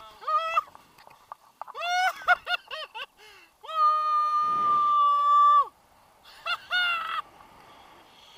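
A man yelling and whooping with excitement: a short rising whoop at the start, a burst of quick cries about two seconds in, then one long held high yell of about two seconds, and a few more short cries near the end.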